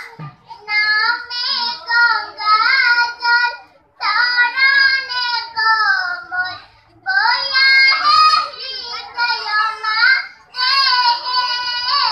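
Children singing without accompaniment, in phrases of a few seconds separated by short breaks; the drums are silent.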